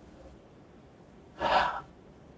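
A person's single sharp, noisy gasp about a second and a half in, short and much louder than the faint hiss around it.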